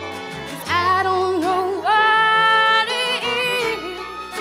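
Bluegrass band playing live: a woman's voice comes in about a second in with long held notes that bend and slide between pitches, over an upright bass, guitar and fiddle.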